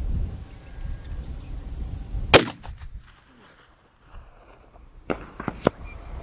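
A single shot from a custom 45-70 Government rifle fitted with a muzzle brake, a sharp crack about two seconds in with a short ringing tail. Two lighter sharp clicks follow near the end.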